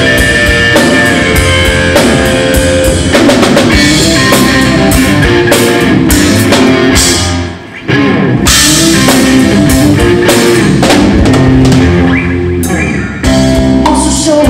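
Live rock band playing an instrumental passage on electric guitar, bass guitar and drum kit. The band drops out briefly a little past halfway, then comes straight back in.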